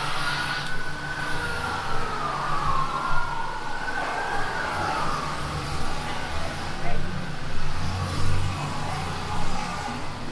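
Emergency vehicle siren wailing, its pitch sliding down and back up for about the first half, then fading, over the low steady hum of city street traffic.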